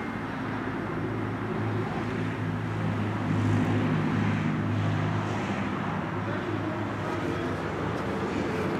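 Steady low engine drone, a little louder a few seconds in, with outdoor background noise.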